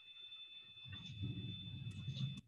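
Faint rustling and low bumps of a person getting up and moving close to the microphone, with a couple of clicks near the end. A steady high-pitched electronic whine runs underneath.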